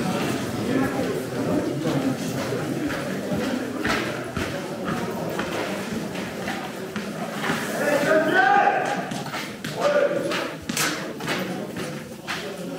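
A group walking on a hard corridor floor: scattered footsteps and knocks over a constant murmur of indistinct voices, with a louder burst of voices about eight seconds in.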